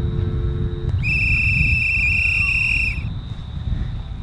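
Wind buffeting the microphone outdoors, a steady low rumble throughout. From about a second in, a single steady high-pitched tone sounds for about two seconds and stops.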